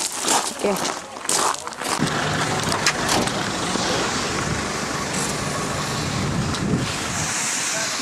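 A vehicle engine runs steadily with a low hum under a broad rushing noise. Near the end the hum drops away and a high hiss remains.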